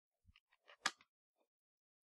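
A quick, faint run of small sharp clicks and taps in the first second, one louder than the rest, with a soft low thump near the start.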